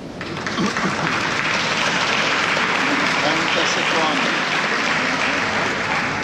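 Crowd of spectators applauding, starting suddenly and going on steadily, with voices calling out among the clapping.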